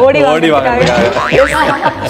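People laughing together, with some talk mixed in; the laughter comes in short bursts that fall in pitch.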